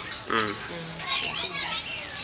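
A brief vocal sound about a third of a second in, then faint background voices of children playing.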